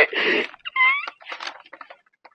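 A man's voice giving a high-pitched, cat-like squeal: a breathy burst, then a short rising squeal about a second in, trailing off into faint scattered clicks.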